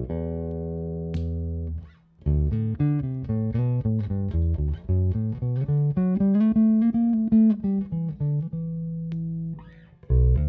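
Long-scale Danelectro DC59 semihollow electric bass, 2007 Korean-made, plucked with the fingers. A low note rings for about two seconds, then a run of single notes climbs in pitch and comes back down, ending on a held note that fades near the end.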